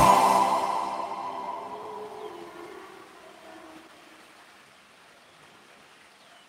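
The last note of a pan flute tune over a backing track dies away, its reverberation fading out steadily over about four seconds to near silence.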